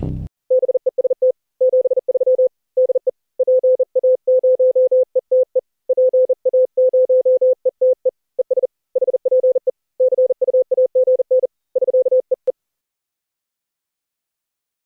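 Morse code sent as a single steady tone of roughly 500–600 Hz, keyed on and off in dots and dashes.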